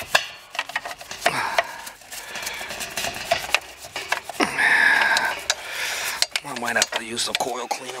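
Brush scrubbing the oily sheet-metal base pan of an air-conditioner condensing unit around the compressor and copper lines: scraping with many small clicks and knocks, and a short high squeak about halfway through.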